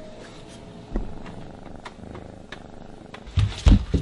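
A kitten purring steadily, with a single knock about a second in and a few loud, deep thumps near the end.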